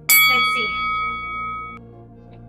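A single bell chime struck once, ringing with several steady overtones that fade and then cut off after under two seconds: a workout timer signal marking the start of the exercise interval. Soft ambient music runs underneath.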